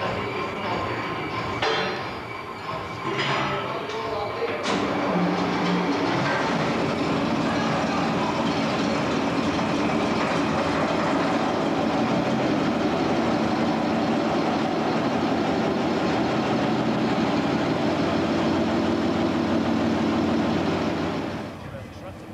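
Diesel shunting locomotive's engine running steadily, with a few metal clanks in the first few seconds; the sound drops away just before the end.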